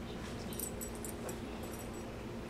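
Border collie sniffing at cardboard boxes and moving about on carpet, with a few faint, light clinks.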